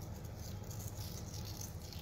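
Flakes of Maldon sea salt sprinkled by hand over focaccia dough in a metal baking tray: a steady, fine pattering rattle.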